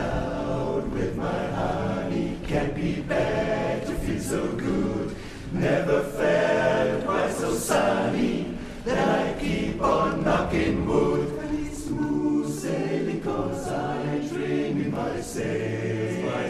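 Men's barbershop chorus singing a cappella in close four-part harmony, an up-tempo number sung without a break.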